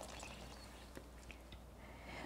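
Near silence: faint room tone with a low hum and a few soft, scattered ticks.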